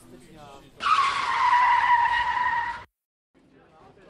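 Electric coffee grinder running for about two seconds: a steady motor whine over grinding noise, its pitch dipping slightly just after it starts. It stops abruptly.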